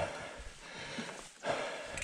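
Mountain bike rolling over a dirt forest trail, with the rider breathing hard. A louder breath or gust of noise starts about one and a half seconds in.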